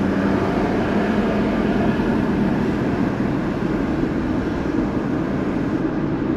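Steady road noise inside a moving car's cabin: tyre and engine hum while driving at low speed along a city street.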